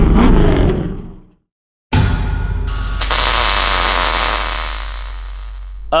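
Intro sound effects: a revving engine sound fades out about a second in. After a short gap of silence, a sudden loud burst of noise over a low hum cuts in and slowly fades.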